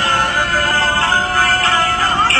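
Chinese opera singing over instrumental accompaniment, a high voice sliding between held notes.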